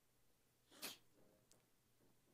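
Near silence, broken just under a second in by one brief, sharp burst of noise.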